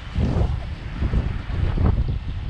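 Wind buffeting the microphone in uneven gusts, a low rumble that surges and drops.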